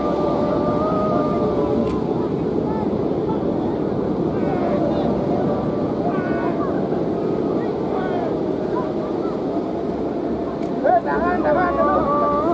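Steady humming drone of the hummers on large Balinese kites flying overhead: two held tones that waver slightly in pitch, over a thick wash of wind and crowd noise. Voices break through briefly in the middle and again near the end.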